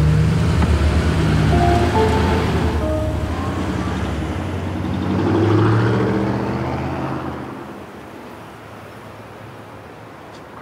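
A large SUV drives past, its engine and tyre noise swelling to a peak about five and a half seconds in and then fading away. Background music with held notes plays over the first half.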